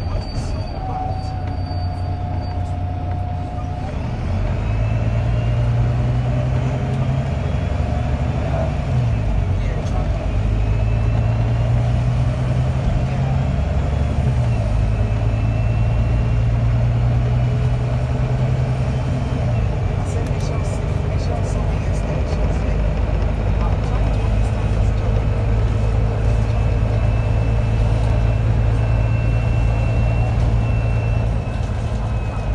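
Volvo B9TL double-decker bus's six-cylinder diesel engine, heard from inside on the upper deck, running under load with its pitch rising and then dropping several times as the bus accelerates and the automatic gearbox changes gear. A faint high whine rises with speed near the end.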